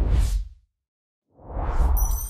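Two deep whoosh sound effects from an animated logo intro. The first dies away about half a second in; after a short silence, a second whoosh swells toward the end.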